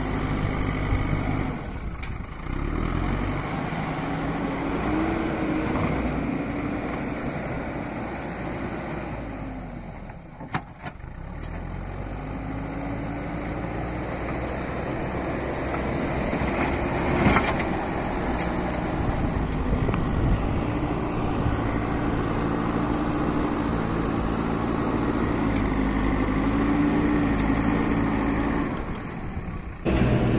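Backhoe loader's diesel engine running under load, its pitch rising and falling as the front bucket pushes and levels soil. The engine briefly drops away about a third of the way through, and there are two short, sharp knocks.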